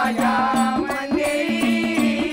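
Maharashtrian Vaghya Murali folk music played by a live ensemble: hand drums and jingling percussion in a quick steady beat of about four strokes a second, under a pitched instrument that repeats a short bending figure.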